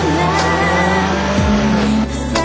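Racing motorcycle engines passing at speed, their note dropping in pitch as a bike goes by about one and a half seconds in, over background music.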